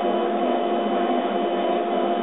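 Laser cutter running as its head cuts holes in thin wooden strips: a steady machine hum with several steady tones held through.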